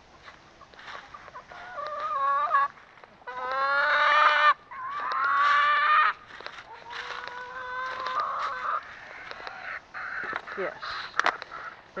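Chickens calling: a run of four loud, drawn-out calls one after another through the middle, then quieter scattered clicks near the end.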